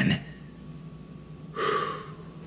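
A voice actor's short, breathy gasp about one and a half seconds in, after a quiet pause.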